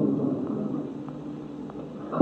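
Low steady background noise and hum of the recording, growing fainter through the pause.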